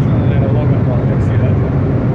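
Steady low drone of a cargo ship's engine and machinery, an even hum that runs unchanged while the ship manoeuvres to berth.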